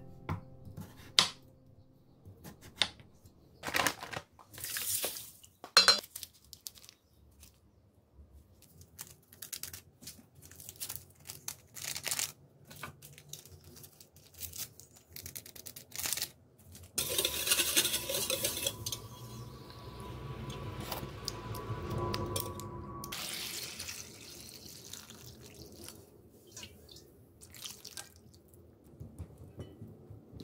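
Kitchen prep sounds: sharp knocks of a knife and cucumber pieces on a plastic cutting board, then, past the middle, water pouring into a stainless steel bowl for several seconds as salt brine is made to salt cucumbers, with clinks of bowls and small handling clicks.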